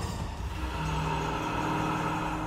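Low, steady drone of a horror serial's background score over a deep rumble, the held note coming in under a second in.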